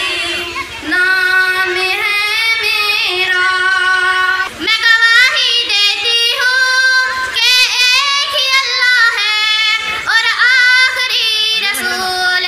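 A girl's solo singing voice, unaccompanied, held melodic phrases with bending, ornamented notes, amplified through a microphone. The singing breaks briefly about four and a half seconds in, then a girl's voice carries on singing.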